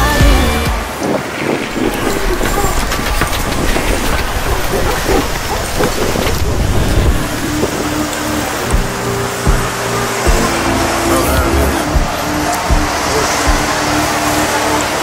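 Busy city street sound: traffic with music mixed in, over a steady low rumble.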